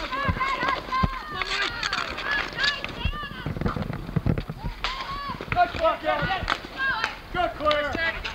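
Street hockey play on asphalt: sharp clacks and knocks of sticks and ball, mixed with short shouts and calls from the players.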